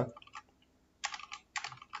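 Computer keyboard keystrokes: a couple of faint taps, then a quick run of key presses starting about a second in.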